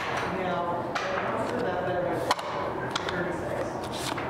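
Background voices talking, with a few light clicks and taps from a deck of playing cards being handled. The sharpest click comes a little over two seconds in.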